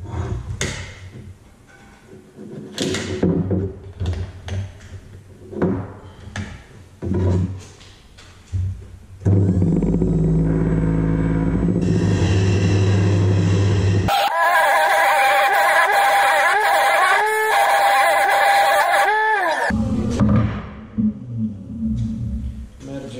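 Electric angle grinder sharpening steel rebar stakes to a point. After several knocks of handling, there are about five seconds of loud, harsh grinding over a steady whine that dips once under load, then the motor winds down and stops.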